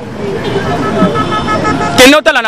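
Street traffic noise swelling, with a vehicle horn giving short repeated toots in the second half, over faint background voices.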